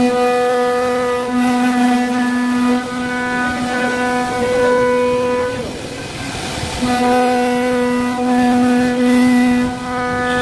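CNC router spindle running with a steady high whine as its bit cuts triangular grooves into a wooden door panel. The tone breaks off for about a second a little past halfway, then comes back.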